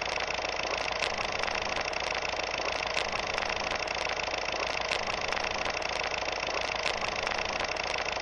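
Film projector sound effect: a steady mechanical whir with a clicking every second or two, laid over an old-movie 'The End' title card.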